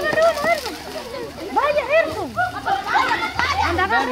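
A crowd of children shouting and chattering excitedly, several voices overlapping, as they scramble on the ground for fallen piñata candy.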